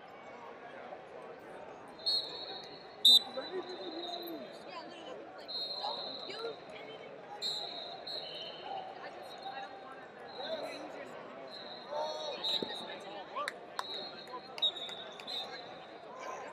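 Referee whistles blowing short blasts again and again across a large arena hall of wrestling mats, over a steady babble of voices from coaches and spectators. A sharp, loud clap stands out about three seconds in.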